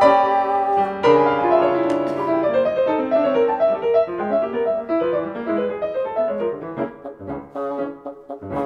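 Bassoon and piano playing a modern classical duet: a held chord, then from about a second in a fast, continuous run of short notes that grows quieter toward the end.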